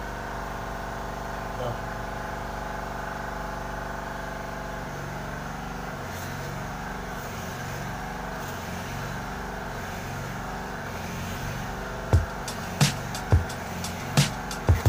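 A few sharp knocks in the last two seconds, as the orange PVC drain pipe is handled and pulled off its fitting. A steady hum runs underneath.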